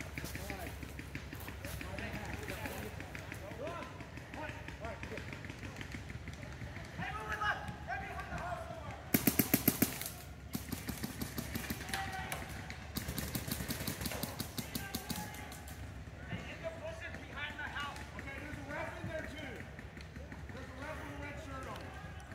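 Paintball markers firing rapid strings of shots, about ten a second, in several bursts between roughly nine and fifteen seconds in, the first burst the loudest. Distant players shout throughout.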